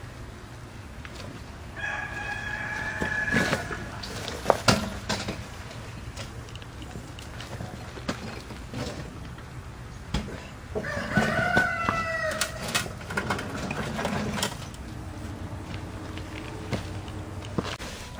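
A rooster crowing twice, each crow about a second and a half long, the second falling in pitch at its end. Between them come a few sharp knocks as the steel boiler shell and bricks are moved.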